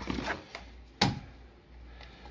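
A few soft clicks and rustles, then one sharp knock about a second in, over a faint low hum.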